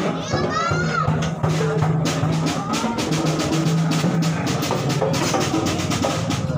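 Street procession band playing: fast, steady drum strikes under a low held melody that moves in steps, with crowd voices and children's shouts over it.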